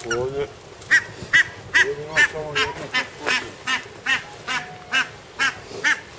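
Waterfowl calling: a steady series of short, high, repeated calls, about two or three a second, starting about a second in.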